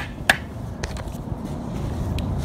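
Hammer striking a pin punch to drive a roll pin into the shifter rod of a Tremac T56 rear offset shifter assembly: two sharp metallic taps right at the start, then a couple of fainter clicks about a second in.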